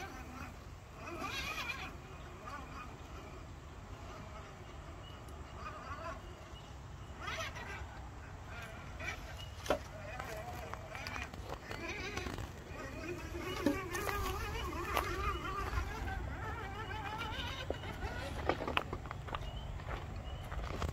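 Faint, indistinct voices talking, with a few sharp clicks in between.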